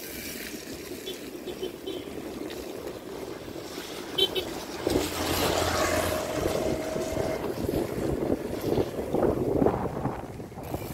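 Riding noise from a bicycle on wet pavement: tyres rolling and wind on the microphone. About halfway through it gets louder, with a steady hum and a held tone for a couple of seconds.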